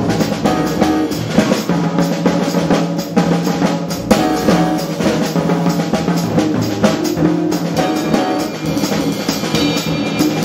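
Jazz piano trio playing: grand piano, upright bass and drum kit, with the drums prominent.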